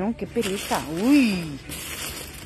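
A woman's wordless vocal sounds, one rising and falling about a second in, over the crinkling and rustling of plastic bags wrapped around goods. The rustling takes over near the end.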